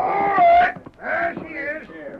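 Sound effect in an old radio drama: a loud, high-pitched animal cry that falls slightly, then a second, quieter cry with a wavering pitch.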